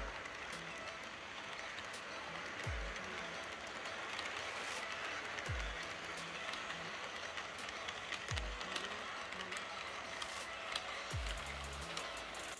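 Background electronic music with a deep, falling bass hit about every three seconds over a dense, steady wash of sound.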